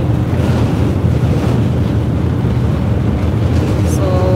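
Steady, noisy low drone of a roll-on/roll-off car ferry's engines under way, mixed with wind buffeting the microphone.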